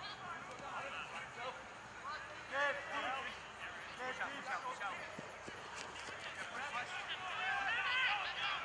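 Rugby players shouting and calling to each other across an open field, several voices overlapping in short distant yells, loudest a little past two seconds in and again near the end.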